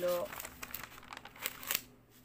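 Pages of a thick paper notebook being turned by hand: paper rustling with a few sharp flicks, the last and loudest just before the end.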